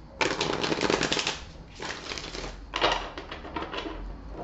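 A tarot deck being riffle-shuffled three times, each a quick run of cards flicking together lasting about a second or less.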